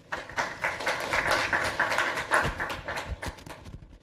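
Audience applauding: many hands clapping at once in a dense patter, thinning toward the end.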